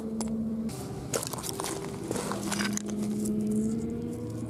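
A steady engine hum in the distance, rising slightly in pitch near the end. Over it, shingle and pebbles crunch and scrape close by for a couple of seconds in the middle.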